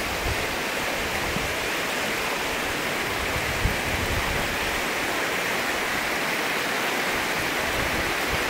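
River rapids rushing over rocks: a steady, even rush of white water.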